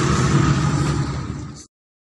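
Steady low engine-like hum with background noise, which cuts off abruptly near the end.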